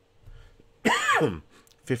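A man clearing his throat once, about a second in, with a sharply falling pitch.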